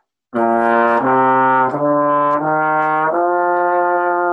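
Trombone playing an ascending C scale legato: five connected notes stepping upward, each only lightly tongued with the air kept going, the last one held.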